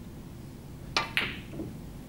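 Snooker shot: the cue tip strikes the cue ball and, about a fifth of a second later, the cue ball clicks sharply into a red with a brief ring. A fainter, duller knock follows about half a second later.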